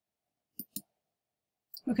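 Two quick, faint computer mouse clicks about a fifth of a second apart, advancing a presentation slide; otherwise near silence until a woman says "okay" at the very end.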